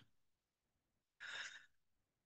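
Near silence, with one short, soft intake of breath by the narrator a little past halfway.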